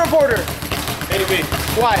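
A small punching bag struck over and over by a boxer's wrapped fists in a fast, steady run of blows.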